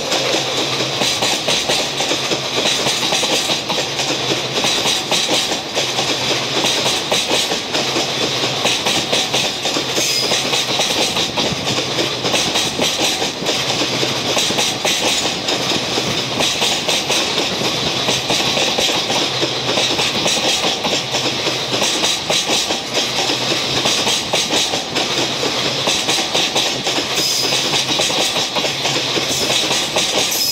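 A long rake of Chiki flat wagons loaded with rails rolls past, its wheels clattering steadily and evenly on the track.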